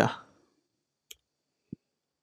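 Two clicks of a computer mouse launching the app build: a thin sharp click about a second in, then a duller, lower click near the end.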